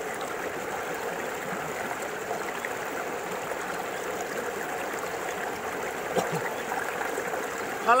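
Steady rushing of a flowing stream.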